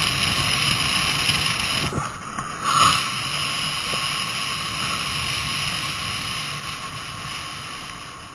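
Wind rushing over the microphone and tyres rolling on asphalt as an engineless soapbox gravity racer coasts downhill. A brief dip about two seconds in and a short swell just after, then the noise slowly fades.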